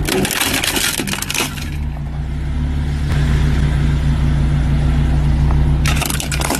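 A car tyre rolling onto an Xbox Series X console and crushing it. Its plastic casing cracks and snaps in a dense burst over the first two seconds, with more cracking near the end, over the car's engine running low and steady.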